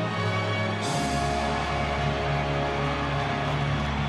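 Music of long held chords, with a deep bass note coming in about a second in.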